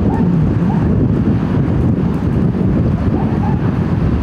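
Wind buffeting the microphone outdoors: a loud, steady low rumble.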